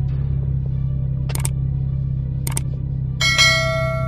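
Subscribe-button sound effect over background music with a steady low drone: two short mouse clicks about a second apart, then a notification bell chime struck near the end and left ringing.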